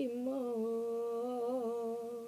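A woman's voice singing unaccompanied, holding one long wordless note that wavers slightly, close to a hum.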